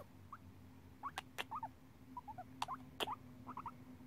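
Guinea pig making a string of short, soft rising squeaks, mixed with several sharp kissing smacks as a person kisses it over a faint steady hum.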